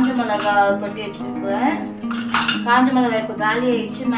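Small stainless steel spice-box cups clinking and scraping against the steel tin as they are handled, with one sharp metallic clink about two and a half seconds in. Background music with a voice runs underneath.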